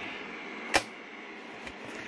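Handling noise: a single sharp click a little under a second in, over a steady faint hiss.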